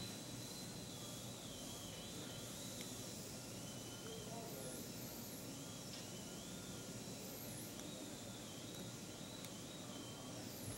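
Faint dental-clinic background: a thin high whine from a dental drill that wavers and dips in pitch, over a steady low hiss.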